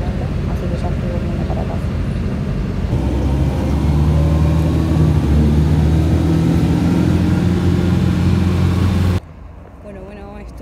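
City bus engine and cabin rumble heard from inside the bus; about three seconds in the engine gets louder with a faint rising whine as the bus gathers speed. Near the end it cuts off abruptly to much quieter street sound.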